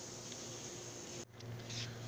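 Quiet room tone with a steady low hum. The sound drops out briefly about a second and a quarter in.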